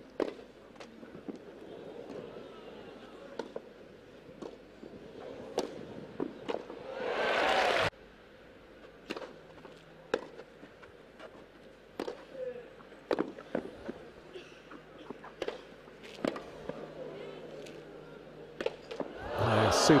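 Tennis rallies on a grass court: a string of sharp single racket-on-ball strikes, one every second or so. About seven seconds in a point ends and the crowd reacts with voices and applause, cut off suddenly; near the end another point ends in a louder crowd reaction with laughter.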